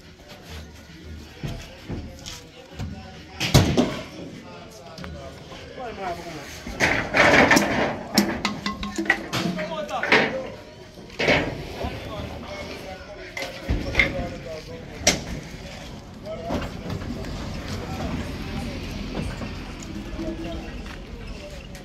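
Scattered knocks and thuds of heavy wooden speaker cabinets and road cases being shifted on a truck bed, mixed with voices.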